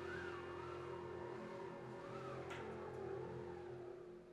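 Wind band playing softly: a held low note with a slow rising and falling line above it, with a brief click about two and a half seconds in.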